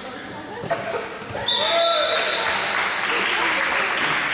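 Handball match in a sports hall: players and spectators shouting, a short shrill whistle blast about a second and a half in, then louder crowd shouting and cheering.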